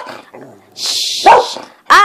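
Small dog barking in short, high yaps, about three in quick succession, with a brief hiss near the middle.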